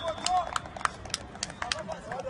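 Men's voices calling out on a football training pitch, over a run of sharp, irregular knocks.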